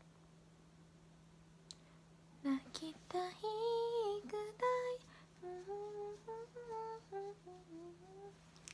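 A young woman humming a short tune with her mouth closed. It starts about two and a half seconds in, with a long held note and then shorter notes stepping up and down. Before it there is only a faint steady electrical hum.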